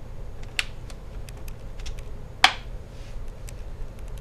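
A few sharp clicks as a MacBook Pro's magnetic MagSafe power connector is pulled from the laptop and the cable is set down: a small click about half a second in, and a loud, sharp one about two and a half seconds in.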